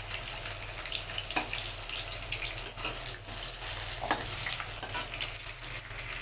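Whole boiled eggs frying in hot oil in a steel kadai: a steady crackling sizzle, with a couple of sharper clicks.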